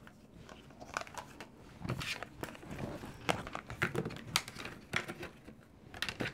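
Tarot cards being slid back into a deck by hand: light, irregular clicks and rustles of card stock.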